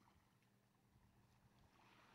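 Near silence: a faint steady hiss with a low hum.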